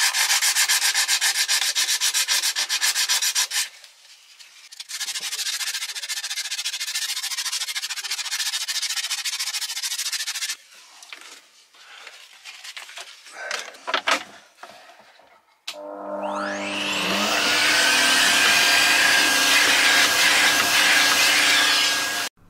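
Sandpaper scrubbed rapidly back and forth by hand over the painted inside of a boat hull, in two bouts of fast, dense strokes, taking the paint off to bare the surface for epoxy. After a few clicks and knocks, a vacuum cleaner starts about three-quarters of the way in, its whine rising and then running steadily.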